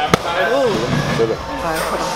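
A single sharp smack of a boxing glove landing on a focus mitt just after the start, with voices in the background.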